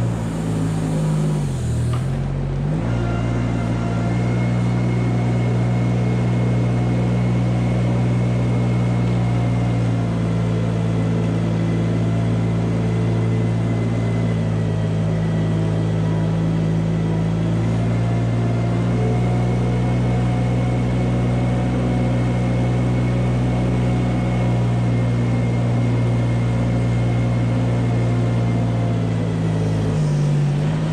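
Compact farm loader's engine running at a steady speed while the loader pushes manure along the alley with its scraper blade. The engine speed dips and comes back up about two seconds in, then holds steady.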